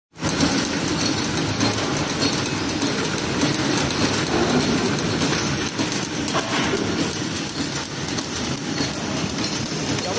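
Automatic plastic-spoon feeding and flow-wrap packing machine running: a steady, dense mechanical clatter with rapid clicking.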